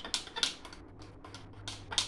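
A few short, sharp clicks over a faint low room hum.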